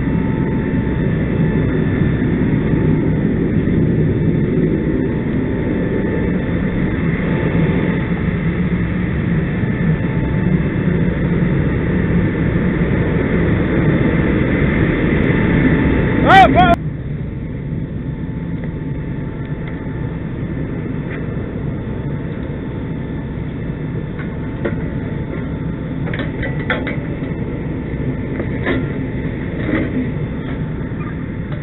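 Fire engine's diesel motor running steadily with a low rumble. About halfway through there is a brief, loud sound that rises and falls in pitch, and then the rumble drops off abruptly to a quieter steady background.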